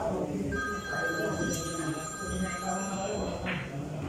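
A steady electronic ringing tone, like a phone's ringtone, held for about two and a half seconds before it stops, over a low murmur of voices.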